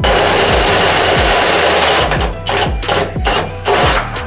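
Milwaukee M18 cordless drill driving a hole saw through the sheet-steel floor of a Toyota FJ40. The drill runs steadily for about two seconds, then cuts in short stop-start bursts as the saw works through. Background music with a steady beat plays underneath.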